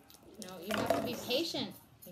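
A voice making a wordless vocal sound, with quickly bending pitch, from about half a second in until shortly before the end.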